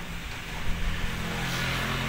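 A motor vehicle engine running steadily with a low hum, its note shifting slightly about a second and a half in.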